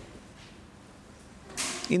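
A pause in a man's speech with faint room tone. About a second and a half in comes a short, sharp hiss of breath, and his voice starts again at the very end.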